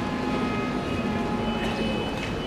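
A steady mechanical drone: a low rumble with several thin, steady whining tones held over it, like a vehicle engine or machine running.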